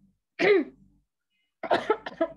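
A woman clearing her throat and coughing: one short burst about half a second in, then a quick run of several coughs near the end.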